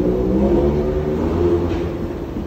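Escalator running: a steady low mechanical hum.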